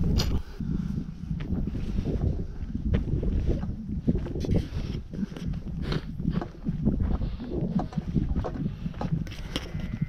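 Wind rumbling on the microphone, with the steps and clothing rustle of someone walking a dry dirt footpath and scattered light knocks.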